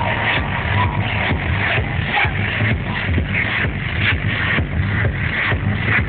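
Techno DJ set played loud over a club sound system, with a steady driving beat of about two kicks a second and a heavy bass line.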